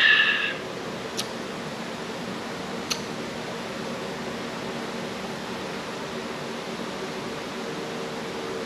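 Steady hum of a wall-mounted air conditioner in a small room. At the very start a ceramic mug with a spoon in it has just been set down on a table, and its short ringing clink fades within half a second. Two faint ticks follow, about one and three seconds in.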